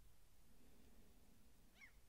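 Near silence: faint outdoor ambience, with one brief, faint, high wavering call near the end.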